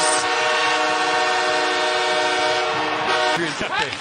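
Arena goal horn of the Los Angeles Kings sounding for a home goal: one long, steady multi-tone blast that cuts off sharply about three and a half seconds in.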